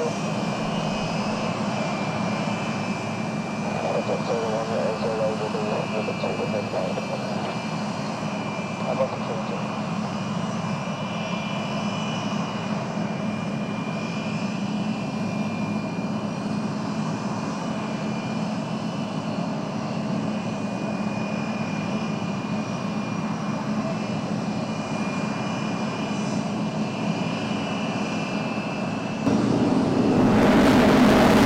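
An F-16 fighter's jet engine running at low power on the ground, a steady whine with a low rumble beneath. It gets abruptly louder just before the end.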